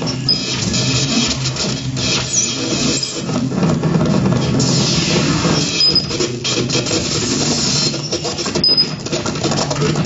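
Live free-improvised electroacoustic music for double bass, laptop and tabletop electronics: a dense texture of clicks and crackles over low sustained sounds, with no steady beat.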